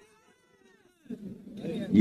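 A man's amplified speech pauses; for about a second only faint, arching voice-like tones are heard, then his voice starts again and builds back to full speech by the end.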